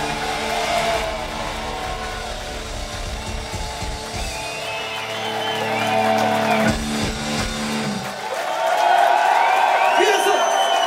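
A rock band's electric guitars and bass ring out on a held final chord, with a last drum hit about seven seconds in, marking the end of a live song. The chord then dies away and a club crowd cheers and whistles loudly.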